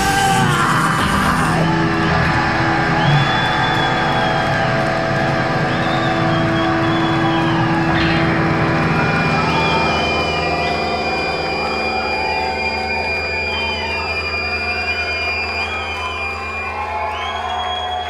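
Live rock band letting its final chord ring out: amplified electric guitars and bass hold and feed back, with high squealing pitches wavering over the top, while the audience cheers and whoops. The sound thins a little after about ten seconds.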